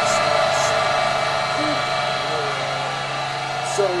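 Loud, dense, distorted audio from an inserted anime clip: a steady buzzing noise with a voice in it, which cuts off suddenly at the very end.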